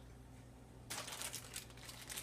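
Clear plastic accessory bag crinkling as it is handled and lifted out of a foam packing tray, starting about a second in.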